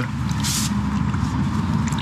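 Drain rod with a plunger head being plunged into a flooded, blocked manhole, sloshing and splashing the standing wastewater, with a brief splash about half a second in. A steady low rumble runs underneath.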